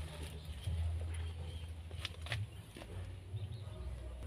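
Steady low rumble of handling noise on a phone microphone, with a few faint light clicks and crinkles from the plastic bag wrapped round a grape bunch as a hand holds it.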